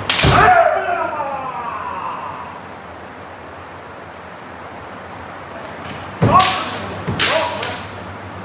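Kendo sparring: a bamboo shinai strike with a stamping step on the wooden floor and a long kiai shout falling in pitch, echoing in the hall, then two more strikes with shouts about six and seven seconds in.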